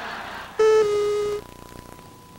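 An electronic beep sound effect lasting under a second. It starts about half a second in and steps down slightly in pitch partway through. A wash of noise fades out just before it.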